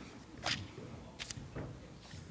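A few faint, sharp clicks in a quiet hall: one about half a second in and two close together just after a second.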